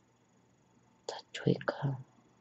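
A person whispering a few hushed words, starting about a second in, mostly breathy hissing consonants with only a little voice.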